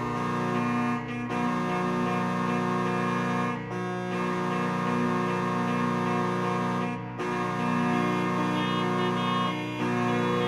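Two-manual digital organ playing slow, sustained full chords in a classical piece, each chord held for two to three seconds before the next.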